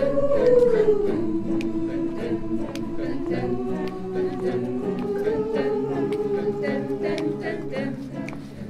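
Mixed-voice choir singing a cappella, holding a long sustained chord in several parts. The top voice slides down in the first second and then stays steady until the chord breaks off just before the end. Short sharp clicks are scattered through it.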